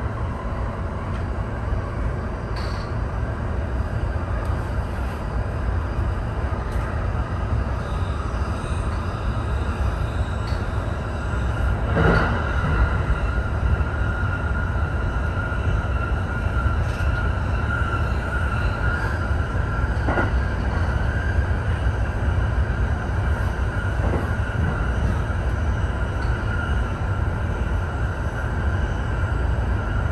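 E231-1000 series electric train's running sound on continuous welded (long) rail, heard from the driver's cab: a steady rumble of wheels on rail with a few isolated sharp clicks. About twelve seconds in, a steady high ringing joins it and holds, the rail sound that the recently re-ground long rail makes resound.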